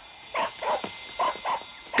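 A hound barking: four short barks in two quick pairs.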